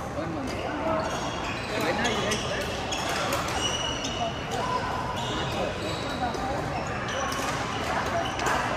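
Busy badminton hall ambience: people talking over sharp, scattered hits of rackets on shuttlecocks and brief high squeaks of shoes on the court floor, all echoing in the large hall.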